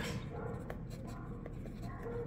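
Fountain pen nib scratching across paper as words are written, faint, with a few small ticks from the strokes.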